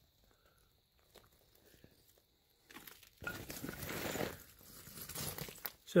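Footsteps crunching on loose broken rock and gravel, starting about three seconds in after near silence.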